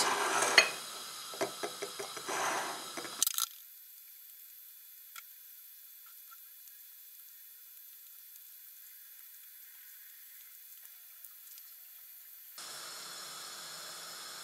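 Hard-boiled eggshells being knocked against a plate, cracked and peeled away: a run of small clicks and crackles with one louder knock in the first few seconds. After that it goes very faint, with only a few soft ticks, and a steady low hiss comes in near the end.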